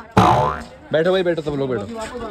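Voices talking, broken about a fifth of a second in by a sudden loud burst of sound whose pitch falls over about half a second.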